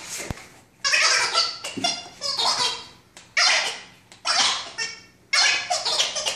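A dog barking repeatedly, about six barks roughly a second apart, each loud and sudden.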